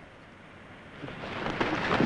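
A rumbling swell of noise that rises out of near quiet about a second in and grows loud.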